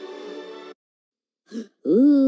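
DVD menu audio. A held chord of menu music cuts off less than a second in. After a short gap comes a brief sound, and near the end a chorus of cartoon voices swells up with a rising pitch.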